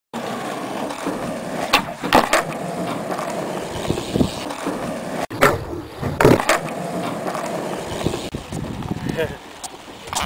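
Skateboard wheels rolling on rough asphalt, broken twice by a quick run of sharp wooden clacks: the tail popping and the board landing in a flatground trick, about two seconds in and again about six seconds in.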